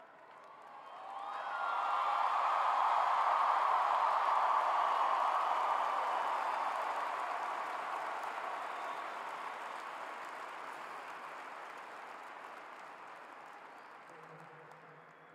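A large arena crowd cheering and applauding. The noise swells about a second in, holds for a few seconds, then slowly dies away.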